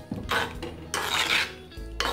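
A spoon scraping against an earthenware clay pot as coconut milk and pumpkin pieces are stirred together, in two short strokes, one about half a second in and a longer one about a second in.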